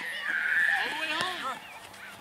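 A high-pitched shout from a child, held for about a second and wavering slightly, over people talking at a youth T-ball game.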